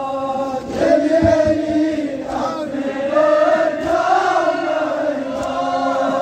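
A group of men chanting a Kashmiri noha, a Muharram lament, together, their voices held in long drawn-out notes that swell in pitch about midway.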